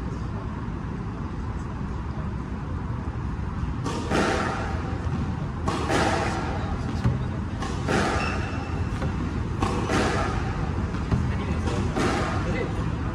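Squash practice: a squash ball struck and rebounding off the court's walls and floor, a burst about every two seconds from about four seconds in, each echoing briefly in the enclosed court, over a steady low hum.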